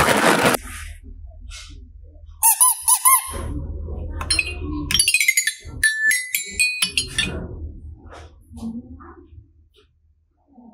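Toy xylophone struck with a mallet: a quick run of bright ringing notes about five to seven seconds in. Before it comes a short noisy rattle at the very start, then a few squeaky chirps that rise and fall, about two and a half seconds in.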